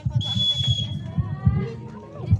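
A referee's whistle blown once: a single steady, shrill note lasting just under a second, over the chatter of voices around the court.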